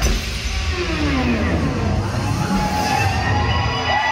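Live concert sound between songs, played through the venue's sound system: tones sweep downward for the first two seconds, then glide upward into a held tone, over a steady low rumble.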